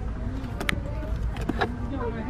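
Shop background: a steady low rumble with faint distant voices, and a few light clicks as a shrink-wrapped desk pad is taken from a cardboard display shelf.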